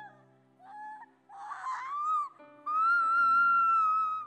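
A woman's high-pitched wailing cries into a nearby microphone over a soft, sustained keyboard chord: two shorter cries, then a long, held high wail from just before the middle that falls away at the end.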